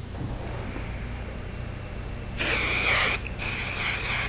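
Anti-humidity hairspray sprayed onto hair in a hissing burst a little over halfway through, then after a brief break a second, weaker burst near the end.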